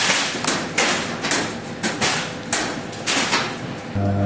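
A string of sharp, bright knocks and clatters, about ten in four seconds at an uneven pace, like hard objects striking metal.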